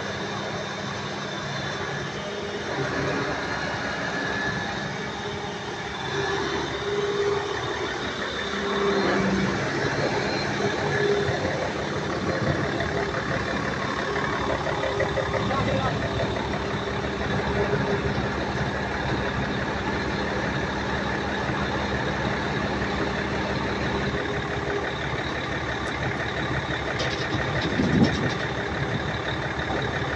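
Heavy diesel truck engine running steadily, powering the truck-mounted hydraulic crane through a lift. A steady hum in the engine noise cuts out about 24 seconds in.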